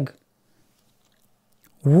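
A pause in speech, near silence: a voice trails off at the start and speech starts again near the end.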